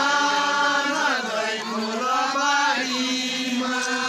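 A group of voices chanting together in long held notes, with a short break near the middle and a lower held note near the end.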